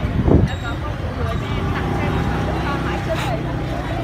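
Background voices of people talking over the steady low rumble of a nearby motor vehicle, with a short loud sound about a third of a second in.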